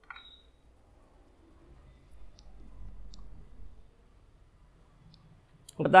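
Quiet room with a few small clicks and a short light tap at the start, then a soft low rumble of handling or movement for a couple of seconds. A man's voice begins right at the end.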